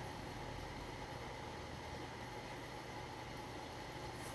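Faint steady room hum with a light hiss, unchanging throughout, with no distinct knocks or clicks.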